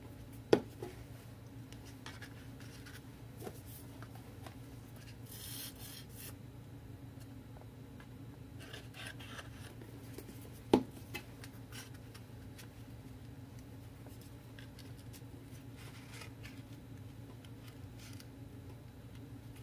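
Hands handling paper and cardboard craft materials on a work table: soft rubbing and rustling, with two sharp knocks, about half a second in and again about eleven seconds in, over a steady low hum.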